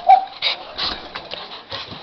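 A small dog gives one short high yelp at the start, followed by a run of quick clicks and scuffles as it jumps down from the couch onto the floor.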